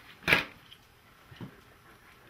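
A short sharp crackle of plastic packaging as the new faucet aerator is taken out of its pack, then a faint second handling sound.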